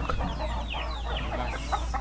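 Chickens clucking in a coop: many short, high calls that fall in pitch, coming one after another over a steady low hum.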